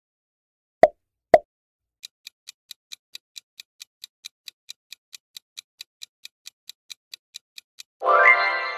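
Two quick pop sound effects about a second in, then a countdown timer's high, even ticking, about five ticks a second, beginning about two seconds in.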